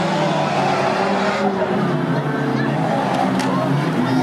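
Several banger racing cars' engines running and revving on a dirt oval, with pitch drifting up and down as the drivers work the throttle.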